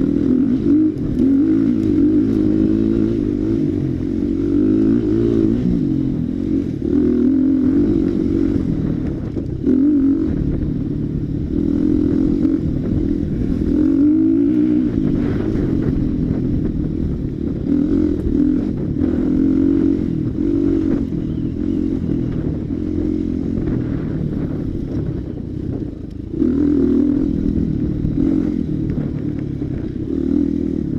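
Dirt bike engine heard up close from on the bike as it is raced along a trail, its pitch rising and falling over and over as the throttle is opened and closed through the turns, with a brief drop near the end before it revs up again.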